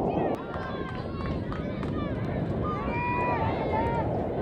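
Sideline game sound at a soccer match: a steady rumble of wind on the microphone, with indistinct shouts and calls from players and spectators. The sound jumps abruptly a moment in, where the footage is cut.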